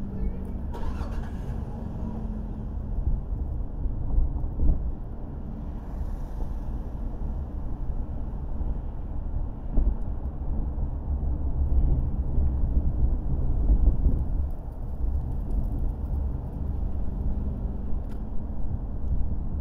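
A car driving slowly on city streets: a steady low rumble of engine and road noise that swells and eases a little as it moves.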